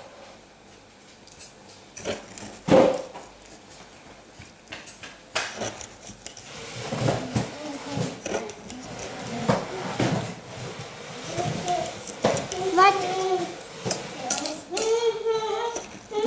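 Kitchenware clinking and knocking against a stainless steel saucepan: one sharp knock about three seconds in, then scattered clinks and knocks. A voice comes in near the end.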